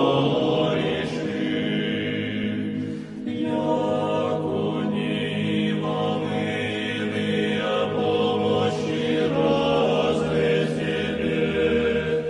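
Chanted vocal music: voices holding long sustained notes over a steady low drone, with a brief dip about three seconds in.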